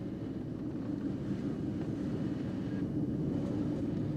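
Mercedes-Benz car driving along: a steady low engine and road rumble with a faint hiss.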